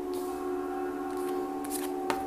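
Tarot cards being dealt and slid over a cloth-covered table: a few short swishes, over steady drone-like background music.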